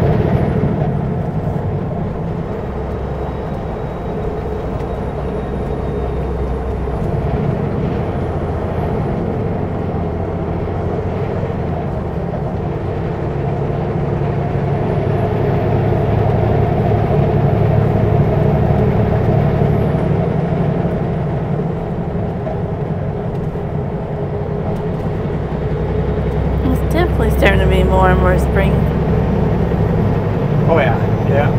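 Kenworth W900L semi truck's diesel engine running steadily at highway speed with road noise, the drone swelling and easing a little over the stretch.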